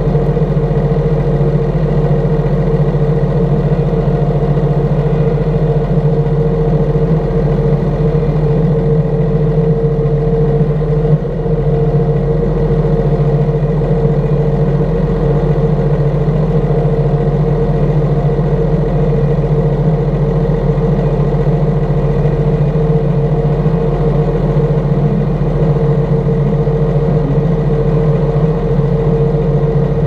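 New Holland T6.155 tractor's six-cylinder 6.7-litre FPT diesel engine running steadily while the tractor is driven slowly.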